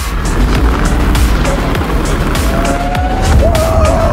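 Background music mixed with a Lamborghini Urus Performante being driven hard, its engine and tyres heard under the music. A man shouts excitedly near the end.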